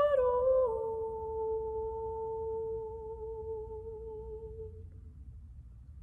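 A woman's solo voice, unaccompanied and humming, steps down two notes and then holds the last, lower note steadily, fading out about five seconds in: the closing note of the song.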